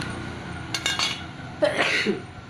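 Steel saw chain clinking and rustling in a plastic bag as it is handled and set down, with a few sharp metallic clinks about a second in and a louder burst near the end.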